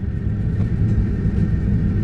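Steady low rumble of a running motor vehicle, with no break or change through the pause.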